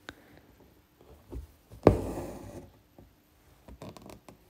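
Embroidery needle and a thick 12-strand length of cotton floss going through fabric stretched taut in an embroidery hoop. A sharp tap comes about two seconds in as the needle pierces the fabric, followed by a short rasp as the thread is drawn through. Fainter taps and ticks come before and after it.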